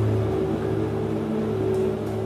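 A steady low machine hum made of several held tones, the constant background drone of the room.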